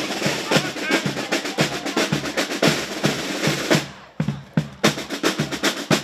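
Marching band drum section playing a steady cadence on snare and bass drums, dropping out for a moment about four seconds in.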